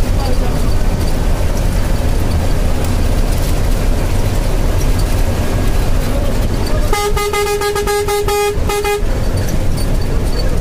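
Steady low road and engine rumble of a moving vehicle, heard from inside it. About seven seconds in, a vehicle horn sounds: one long blast of about a second and a half, then a short second blast.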